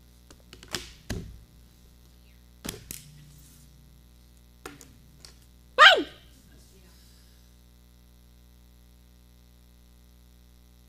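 Steady low electrical hum from the sound system, with a few soft knocks and clicks in the first five seconds as things are handled at the pulpit table. About six seconds in comes a brief vocal whoop that falls sharply in pitch, the loudest sound.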